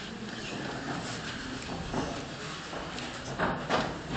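Shuffling and knocking of the players moving on wooden folding chairs and at their music stands, with two sharper knocks near the end as one clarinettist gets up from his chair.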